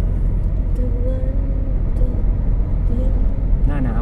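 Car driving along an open road, heard from inside the cabin: a steady low rumble of engine and tyres on the road.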